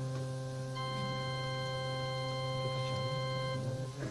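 Organ holding a sustained chord. Higher notes join about a second in and drop out shortly before a new chord comes in at the end.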